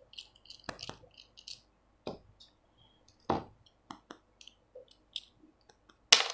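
Faint, scattered metal clicks and taps from a small screwdriver and the parts of a spinning reel's aluminium handle knob as the knob's screw is undone and the knob is pulled apart, with a few sharper knocks near the start, at about two seconds and a little after three seconds.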